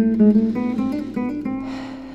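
Background music: an acoustic guitar picking a melody of single notes, several a second, growing quieter toward the end.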